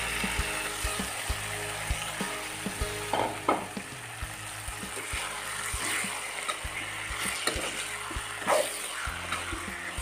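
Marinated mutton sizzling in hot oil in a steel kadai, with a metal spatula scraping and clicking against the pan as the meat is stirred.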